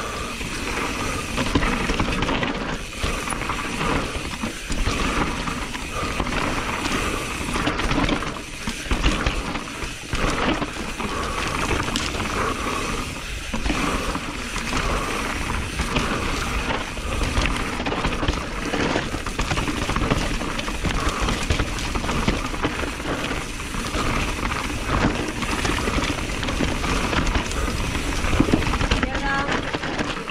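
Radon Swoop 170 enduro mountain bike ridden fast down a dry dirt forest trail: constant rush of wind on the microphone with tyre noise and chain and frame rattle, broken by irregular knocks over bumps and roots.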